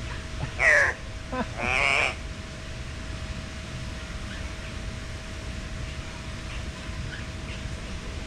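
Two loud, harsh calls from a bird in an aviary in the first two seconds, the first falling in pitch, then faint short chirps from other birds over a steady low hum.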